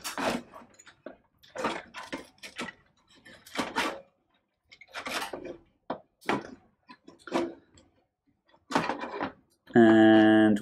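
Cables and plastic case parts being handled inside a PC case: short bursts of rustling, clicking and knocking, about one every second, with quiet gaps between.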